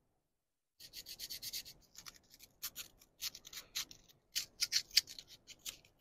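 Sandpaper rubbing on a spark plug in quick, short, scratchy strokes, several a second, starting about a second in: the plug is being cleaned by hand.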